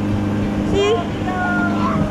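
Motorboat engine running with a steady low hum.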